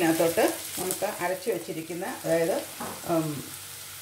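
Chopped onion and coconut flakes sizzling as they fry in oil in a steel saucepan, stirred with a spoon, under a voice speaking.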